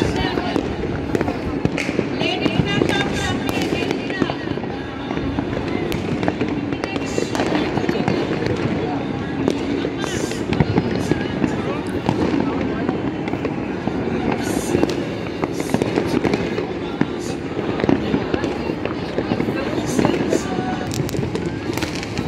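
Fireworks and firecrackers going off all over the city. Bangs and pops come one after another without a break, and sharper cracks stand out now and then.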